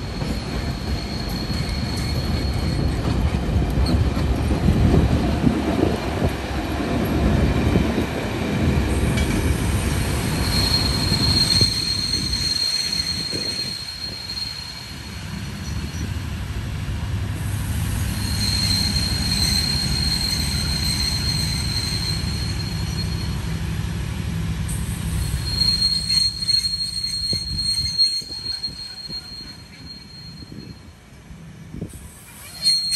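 NOHAB diesel-electric locomotive running past close by, its engine loudest in the first several seconds. Then the passenger coaches roll by with a steady rumble and long high-pitched wheel squeals that come and go three times.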